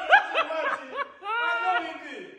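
Men laughing: a quick run of short, high-pitched laughs, then a longer held laugh in the second half.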